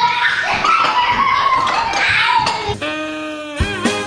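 Several adults and children talking and laughing at once in a small room. About three seconds in comes a short held, steady pitched note, and music starts near the end.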